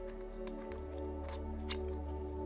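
Soft background music with sustained chords, under a few faint light clicks of fingers working a nylon band through a plastic roll cage.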